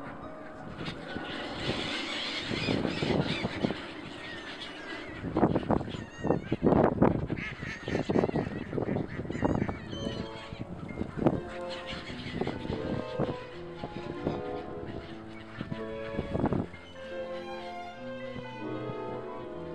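A flock of gulls calling over background music. The calls are loudest in the middle few seconds.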